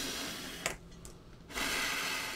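Two rough rubbing strokes, a short one and then a longer one about a second and a half in, with a sharp click between them: something being slid or rubbed across a surface.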